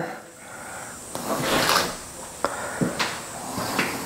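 An interior door being handled and opened: a rustling swish about a second and a half in, then a few sharp clicks and knocks.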